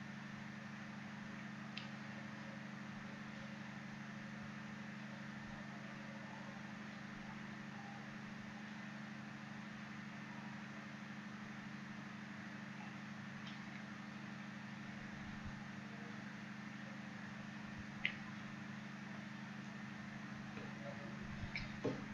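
Faint steady low hum with light hiss: recording background noise. A couple of brief faint clicks, the clearest about eighteen seconds in.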